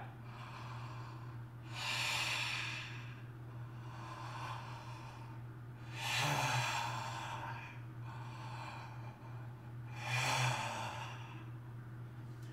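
A man taking slow, deep breaths through a wide-open mouth, drawing air down into the diaphragm in a belly-breathing exercise: three loud rushes of air about four seconds apart, with a fainter one between the first two. A steady low hum runs underneath.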